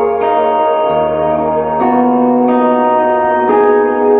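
Electric guitar (Ibanez) playing a progression of sustained, ringing chords over a low E pedal tone, a new chord struck about every second and a half.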